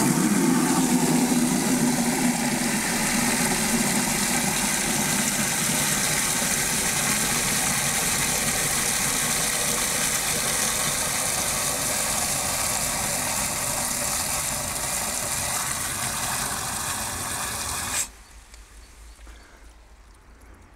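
Water from an outdoor tap running at full flow into a plastic 10-litre bucket, a loud steady rushing that is deepest at first while the bucket is empty. It cuts off suddenly about 18 seconds in, the time the bucket takes to fill in this flow test of the water supply.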